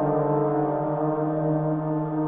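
Trombone holding one long, steady low note rich in overtones.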